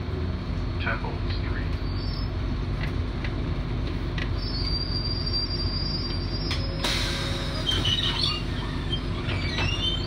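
Inside an MBTA RTS transit bus: the engine runs with a steady low rumble, and the body gives short squeaks and rattles. About seven seconds in, a sharp burst of air hiss comes from the bus's air system, followed by a few high squeaks.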